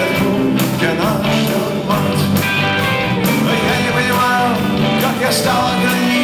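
Live rock band playing full out: drum kit with cymbals, bass, electric guitars and keyboards.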